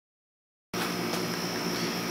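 Silence, then, a little under a second in, a steady hum and hiss cuts in abruptly: a box fan running in the shop.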